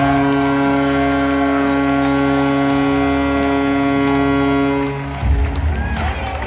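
Arena horn sounding one long, steady multi-tone blast of about five seconds that cuts off suddenly, followed by crowd cheering.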